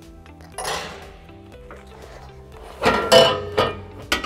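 Metal clanking and rattling of the seed drill's calibration crank handle being handled, with a short rustle about half a second in and the loudest clanks about three seconds in, over background music.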